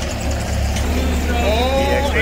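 Bobcat T190 compact track loader's diesel engine idling, a steady low rumble. A man's voice comes in over it about halfway through.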